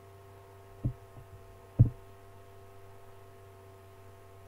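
Two dull, low thumps about a second apart, the second louder, over a steady electrical hum.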